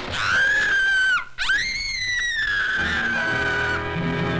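A shrill, high-pitched wailing cry. It dips and breaks off about a second in, then rises again and slides slowly downward until it stops near the end.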